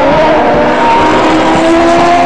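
Several Turismo Carretera race car engines running and revving, their pitches slowly rising, heard loud and mixed together.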